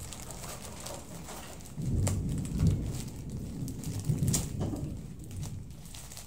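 Thunder rumbling low and rolling, starting about two seconds in and swelling and fading over about three seconds.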